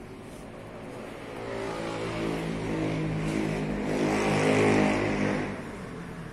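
A motor vehicle passing close by: its engine hum builds over a few seconds, is loudest shortly before the end, then fades quickly.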